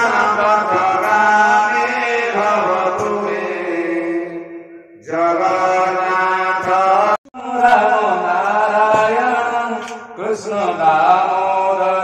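Male Hindu priests chanting a mantra into a microphone in long, held, gliding tones, pausing for breath about five seconds in, again briefly near seven seconds, and once more near ten seconds.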